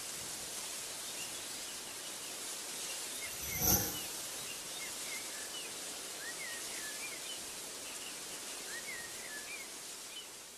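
Background nature ambience: small birds chirping faintly and sporadically over a steady hiss. About three and a half seconds in, a single short pitched sound effect rises above it, the loudest sound here.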